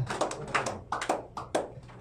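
A few scattered hand claps, irregularly spaced and trailing off into quiet.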